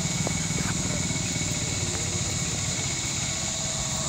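A steady low mechanical hum, like an engine running evenly, under a steady high-pitched hiss.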